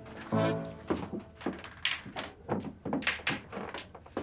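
Footsteps of a person walking on a hard floor, about three steps a second, each a sharp knock, starting about a second in.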